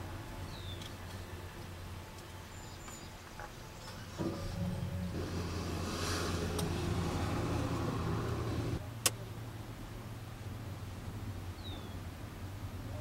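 Low, steady hum of a vehicle idling, heard from inside its cab. A louder rumble comes in about four seconds in and drops away near nine seconds, followed by a single sharp click.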